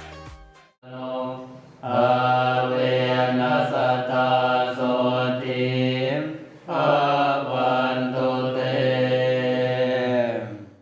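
Thai Buddhist monks chanting a blessing together in one low, steady drone, starting about a second in, growing louder, and breaking briefly for breath about two-thirds of the way through.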